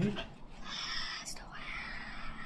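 Soft whispering voice with no clear words.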